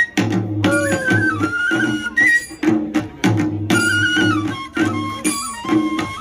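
Live Tripura folk music for the Hojagiri dance: a bamboo flute playing a wavering melody over a steady beat from barrel drums.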